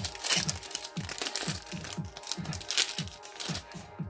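Foil booster pack wrapper crinkling and tearing in several bursts as the pack is opened. Background music with a repeating falling bass line plays throughout.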